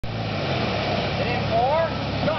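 A vehicle engine running steadily, with people's voices calling out over it in the second half.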